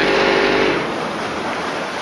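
A held spoken syllable trailing off under a second in, then steady outdoor background noise with no distinct event.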